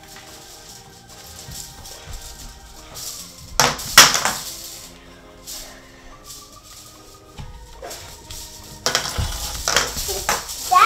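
Background music with steady held notes, and plastic hula hoops clattering: a loud sharp clatter about four seconds in and more knocking near the end.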